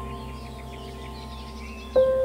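Soft ambient background music: a held chord slowly dies away, with faint bird chirps above it. A new note is struck just before the end.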